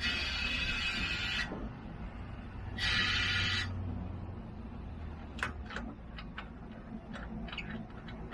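Compressed air hissing in two bursts as a sewer-liner inversion drum is pressurized to blow an epoxy-saturated liner into the old pipe: the first burst lasts about a second and a half, the second about a second, starting about three seconds in. A low steady hum runs under them and fades. Light clicks and taps follow in the second half.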